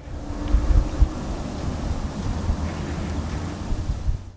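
Wind buffeting the microphone: a gusty low rumble with hiss, peaking about a second in.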